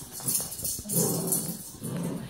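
Small bells on a Christmas decoration jangling as a border collie shakes and plays with it. There are two louder, lower swells about a second in and near the end.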